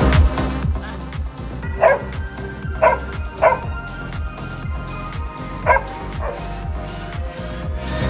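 A dog giving five short yelps, in two clusters from about two to six seconds in, over background music with a steady low beat.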